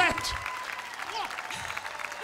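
A large audience applauding steadily, with the end of a shouted word at the very start and a few brief calls from the crowd.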